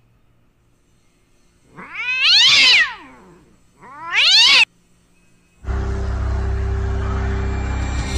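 Two drawn-out cat-like yowls that rise and then fall in pitch, the second shorter and cut off abruptly. A little after halfway a steady, low droning hum sets in and carries on.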